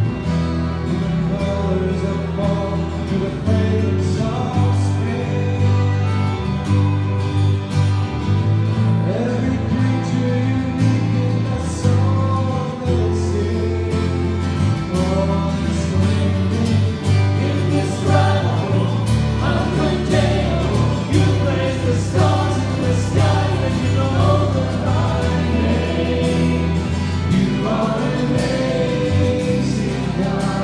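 Church choir singing a closing hymn with instrumental accompaniment, over steady sustained bass notes.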